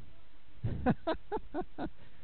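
Faint, distant voices: a few short syllables in the second half, over a steady background hum.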